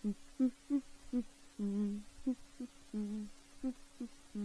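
A person humming a tune in short separate notes, a couple of them held a little longer.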